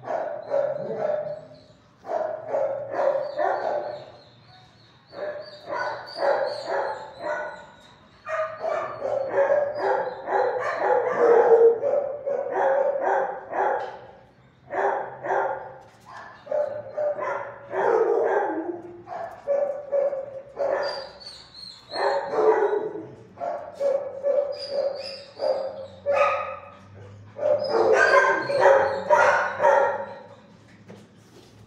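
Shelter dogs barking in a kennel room, in runs of rapid barks broken by short pauses, with a few higher-pitched yelps.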